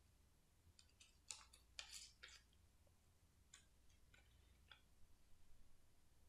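Faint tearing of a paper clipping by hand: a few short rips about a second to two and a half seconds in, then scattered light rustles and ticks of paper being handled.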